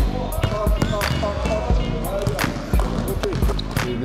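Basketballs bouncing on a gym floor in a series of sharp, irregular thuds about every half second to a second, over music and voices.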